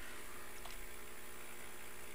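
Steady low electrical hum with faint hiss: room tone.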